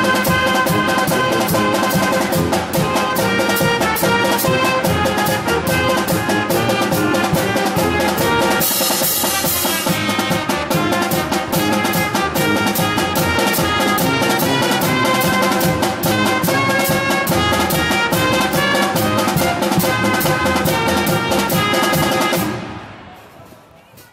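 A pep band playing an upbeat tune on a steady fast drum beat: trumpets, clarinet, saxophone and sousaphone over snare and bass drums, with a cymbal crash about nine seconds in. The music fades out near the end.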